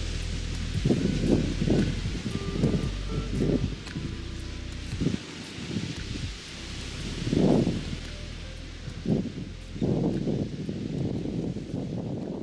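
Wind buffeting the microphone in irregular low gusts over a steady hiss of wind and small surf on a sandy beach.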